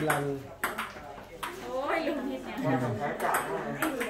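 Table tennis ball clicking sharply off the paddles and the table, a handful of hits at uneven spacing, with people talking over it.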